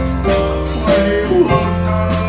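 Live country band playing an instrumental break in a waltz, with a steady bass line, drums and cymbals, and keyboard, and no singing.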